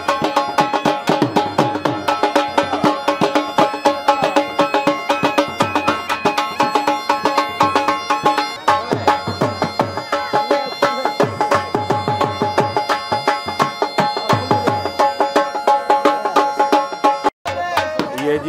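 Bagpipe playing a folk tune over its steady drones, with a dhol drum beating along. The music breaks off for a moment near the end.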